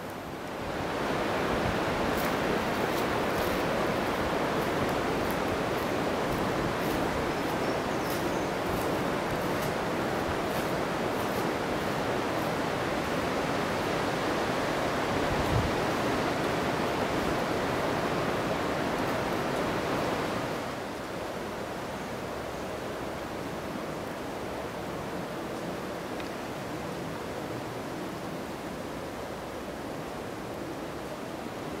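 Strong wind rushing through the leafy forest canopy, a steady surf-like rush of moving leaves and branches. It swells about a second in and drops to a quieter, steady rush at about twenty seconds.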